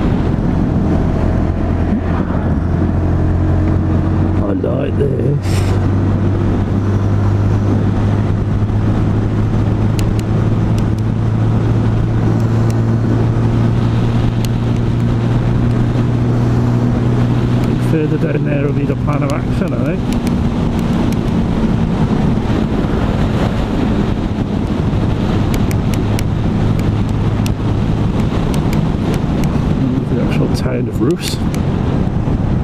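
125cc Sinnis Outlaw motorcycle engine running at a steady cruise under way, heard from the rider's seat. Its note shifts briefly about five seconds in and again near twenty seconds.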